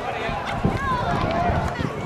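Indistinct chatter of nearby spectators talking.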